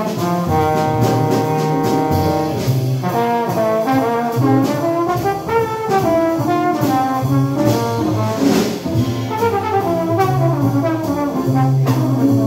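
Live small-band jazz: a trombone solo, opening on a long held note and then moving into quicker phrases, over piano, upright bass and drums with cymbal strikes.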